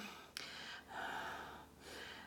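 A woman breathing softly in a pause between words, with one short click about a third of a second in.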